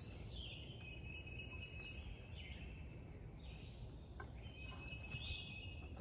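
Faint outdoor ambience: birds calling with short sweeping notes every second or so over a low steady rumble, with a thin steady high insect-like tone and a single faint click about four seconds in.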